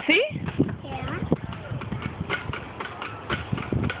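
Plastic playground spring rider being rocked back and forth by a child, giving irregular clicks and knocks, with a brief voice right at the start.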